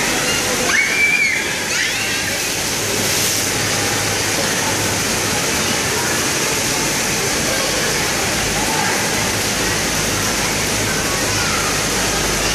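Steady rush of running water from an indoor water park's splash-pool water features, with voices in the background and a brief high-pitched call about a second in.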